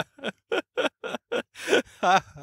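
A man laughing in a run of short breathy bursts, about three a second.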